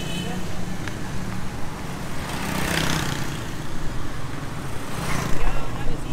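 Street traffic: motor vehicle engines running steadily, with one vehicle passing louder about three seconds in.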